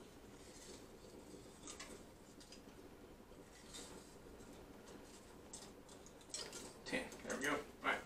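Faint rustling and light clicks of dried bay leaves being handled and taken from a small spice jar, over a low steady hum. A man's voice is heard briefly near the end.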